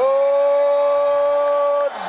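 A man's voice holding one long, steady note: the drawn-out final vowel of "Nonito" as the boxing ring announcer calls out the winner's name. It breaks off just before the end, ahead of "Donaire".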